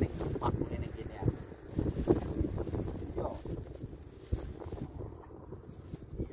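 A man's voice talking indistinctly, with wind buffeting the microphone as a low rumble; the talk thins out in the second half.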